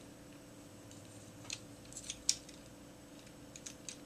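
A few faint, sparse clicks and light taps of a Kenner M.A.S.K. Bullet plastic toy vehicle being turned over in the hands, the sharpest a little past the middle, over a faint steady hum.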